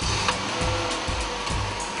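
Car engine idling just after being started, heard as a steady whooshing noise, over background music.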